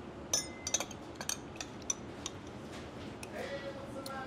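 A metal spoon clinking against the sides of a glass measuring cup while stirring juice: a quick, uneven run of light clinks over the first two seconds or so, then it stops.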